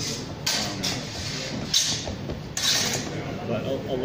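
Longsword sparring: a few short scuffing, scraping bursts from fencers' feet and steel blades, irregularly spaced, under low background voices.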